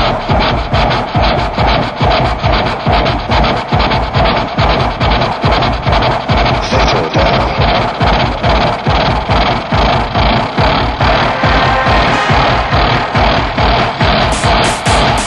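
Instrumental techno track: a steady, driving beat at about two pulses a second under a dense layer of electronic sounds, with no vocals.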